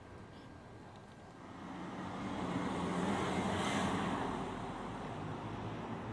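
Noise of a passing vehicle that swells over a couple of seconds and then eases off, over a faint steady low hum.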